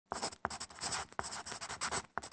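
Pen scratching across paper in a run of short, quick strokes, a handwriting sound effect.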